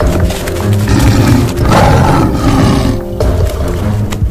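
Dramatic background music with a tiger roar sound effect laid over it, rising about a second and a half in and cutting off sharply a little after three seconds.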